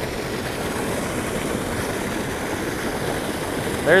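Steady rush of water pouring from a culvert pipe into a spillway pool and churning its surface.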